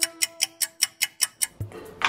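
Timer ticking sound effect, fast and even at about five ticks a second, over a held synth note, as the one-minute countdown begins. The ticking stops about a second and a half in, and a low thump starts a music beat near the end.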